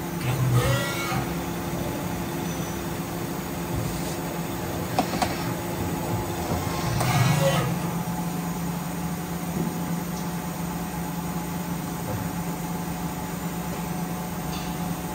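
Miyano BNE-51SY CNC lathe running, a steady hum with several held tones. Two louder surges come about half a second in and about seven seconds in, and a couple of sharp clicks about five seconds in, as the tool slides and turrets move.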